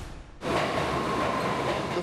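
A brief whoosh, then from about half a second in, loud steady noise of a New York City subway train running through the station, with a faint held whine above it.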